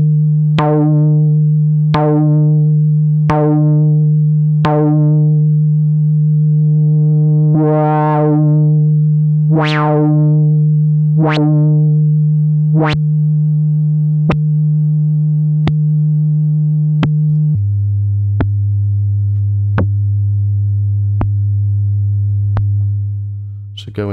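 Moog Sub 37 analog monosynth holding one low note while its looping filter envelope sweeps the filter open and shut in a steady repeating wah, about once every second and a half. The sweeps swell, then shorten to brief plucky blips as the envelope is made quicker. About two-thirds of the way in, the held note drops lower and keeps pulsing until it stops near the end.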